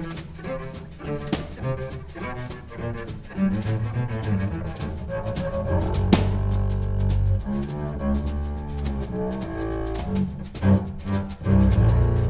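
Upright double bass played with the bow in a jazz group, with low sustained bowed notes that swell strongly about six seconds in. Sharp percussive strikes from the drum kit run through it.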